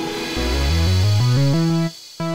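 Sampled major-triad chords played on an Elektron Octatrack sampler over a bass line that climbs in steps. They lead toward a D major triad over a G-sharp bass, used as an altered dominant. The music cuts off just before the end and a short chord sounds.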